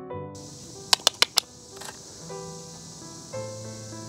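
Camera shutter firing four frames in quick succession, about one every 0.15 s, a second in, over soft background piano music.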